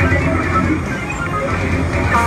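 Electric guitar and electric bass played live together through amplifiers: a loud, continuous band passage with a strong low end.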